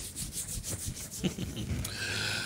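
A man's hands rubbing together in a run of short, dry strokes.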